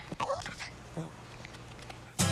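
A small dog whimpering: a short high whine just after the start, with a fainter one about a second in.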